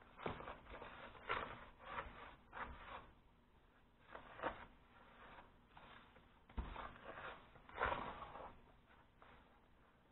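A bare hand stirring dry seasoned corn muffin mix in a tub: faint, irregular swishing and scraping strokes of the powder against the container, with a short pause about three seconds in.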